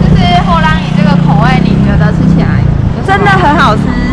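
Women talking, with a steady low street rumble underneath.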